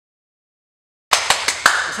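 Dead silence for about a second, then a man's hands clapping four quick times within half a second before he starts to speak.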